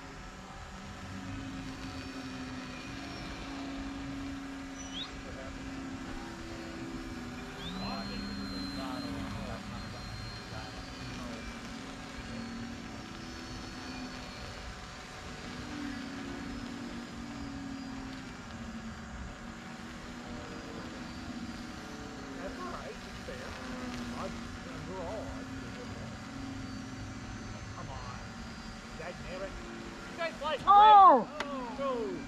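Motors and propellers of several small electric RC airplanes buzzing overhead at once, their pitches wavering up and down as they throttle and turn, over a low steady rumble.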